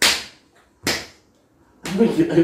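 Two short, sharp breathy bursts of unvoiced laughter, about a second apart.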